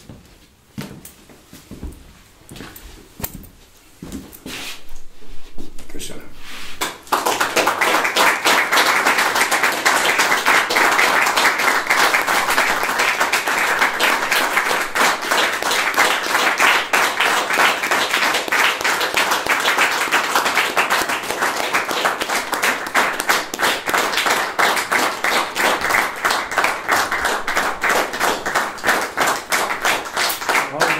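Audience applauding. A few scattered claps come first, then about seven seconds in it swells into full, steady applause.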